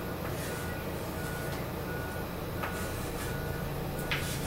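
A short, high electronic beep repeating about once every 0.7 seconds over a steady low hum, in the pattern of a vehicle's reversing alarm. A brief scratchy marker stroke comes about two-thirds of the way through.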